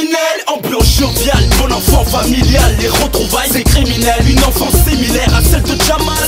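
Hip hop track: a man rapping over a beat with a heavy bass line. The bass is cut out at the start and comes back in under a second in.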